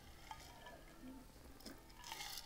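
Near silence: a man drinking quietly from a metal tumbler, with two faint small clicks, one shortly after the start and one near the end.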